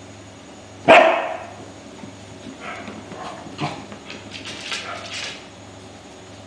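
Pembroke Welsh Corgi puppy barking: one loud, sharp bark about a second in, followed by a run of softer, shorter barks and yips over the next few seconds.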